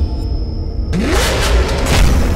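A logo sting: heavy bass music with a car engine revving sound effect about a second in, a single rising sweep with a sudden rush of noise.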